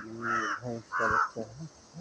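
A crow cawing repeatedly, short harsh calls about every half-second, with a low steady drone beneath the first one.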